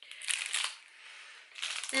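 Clear plastic wrapping on a round bar of soap crinkling as it is handled, in short rustles about half a second in and again near the end.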